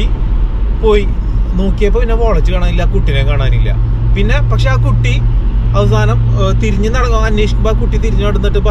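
A man talking inside a moving car's cabin, over steady low road and engine rumble. A steady low hum joins in a couple of seconds in.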